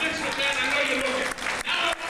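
Audience applauding, with voices heard under the clapping; separate sharp claps stand out in the second half.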